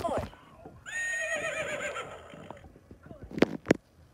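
A high, wavering, whinny-like vocal sound lasting a little under two seconds, followed near the end by two sharp slaps about a third of a second apart.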